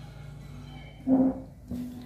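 A person eating from a porcelain bowl: a short hummed "mm" while chewing about a second in, the loudest sound, then a light click of a metal spoon against the bowl, over a steady low background hum.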